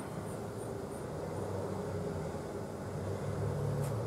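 Steady low rumble of town traffic heard through the room, with a faint even background hiss.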